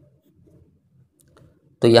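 Faint pen writing on paper, with a few light ticks of the pen tip.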